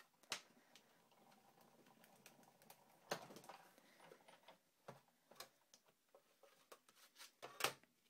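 Sizzix Big Shot die-cutting machine being hand-cranked, faint, as the embossing folder and cutting plates feed through the rollers, with a few sharp clicks and knocks of the plastic plates along the way.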